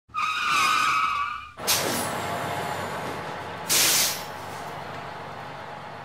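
Vehicle sound effect in a video intro: a wavering tyre screech for about a second and a half, then a sudden loud burst of noise that fades slowly, and a short sharp hiss a little before the four-second mark.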